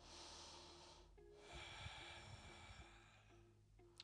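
Near silence: a person breathing faintly, two long breaths, over faint background music.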